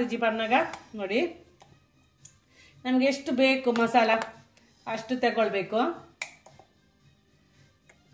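A woman's voice in three short phrases, followed by a single sharp click near the end.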